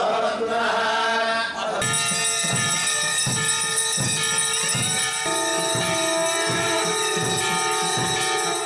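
Male priests chanting Vedic mantras for the first couple of seconds. Then several conch shells are blown together in long, steady held tones for aarti, over a steady rhythmic beat; one of the lower tones drops in pitch about five seconds in.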